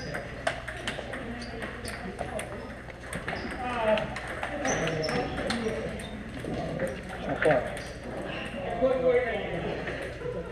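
Table tennis balls being hit back and forth: irregular sharp clicks of the ball off paddles and tables, from several tables at once, over a background of people's voices.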